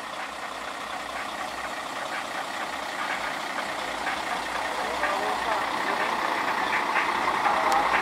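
Mercedes-Benz Axor truck's diesel engine running at idle, a steady sound that grows gradually louder.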